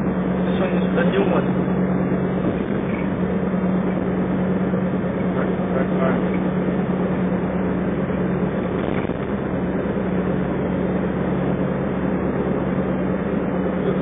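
A car's cabin while driving at speed: a steady engine hum with road and tyre noise, heard from inside the car.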